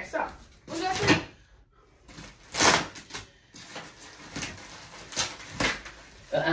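Indistinct talk, with a few short knocks and rustles in between.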